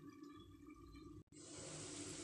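Near silence at first. After a brief dropout a little over a second in, a faint, steady hiss of chicken cooking in a covered pot.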